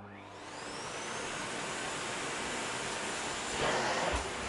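Vacuum cleaner switched on: its motor whine rises in pitch over the first second as it spins up, then it runs steadily, a little louder near the end.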